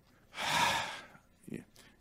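A man's quick, loud intake of breath close to the microphone, lasting about half a second, the breath a speaker takes before talking.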